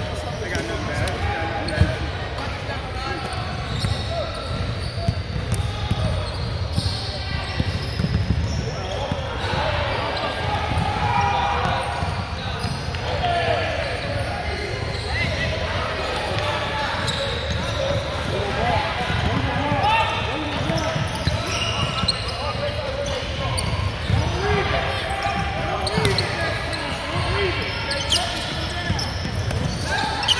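A basketball bouncing on a hardwood gym floor, with several sharp bounces heard over indistinct voices echoing in a large gym.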